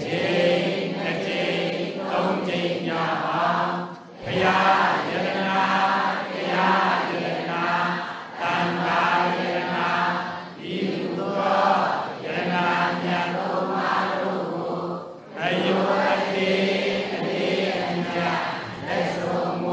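A group of voices chanting a Buddhist devotional recitation in unison, on a steady low reciting tone in connected phrases, with short breaks about four seconds in and again near fifteen seconds.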